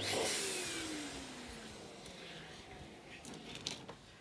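Electric balloon pump blowing air into a large balloon: a sudden rush of air with a whine that falls in pitch and fades over about two seconds, leaving a quieter hiss.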